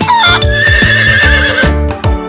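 A horse whinnying: one long, high, wavering call lasting over a second, over a children's-song backing with a steady beat.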